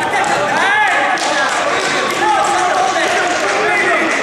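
Several voices calling out over one another from around the mat, mixed and echoing in a large sports hall.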